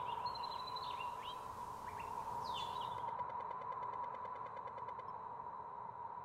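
Birds chirping in short calls during the first half, over quiet outdoor ambience. A steady high-pitched tone runs underneath throughout.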